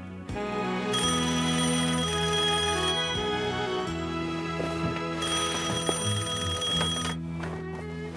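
Black rotary desk telephone ringing twice, each ring lasting about two seconds with a pause between, over background music.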